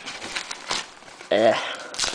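Foam and plastic packing wrap crinkling and rustling as a boxed product is tugged out of it, with a short vocal grunt a little past the middle.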